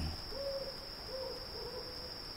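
Faint night ambience: three short, soft hoots in a row over a steady high drone of insects.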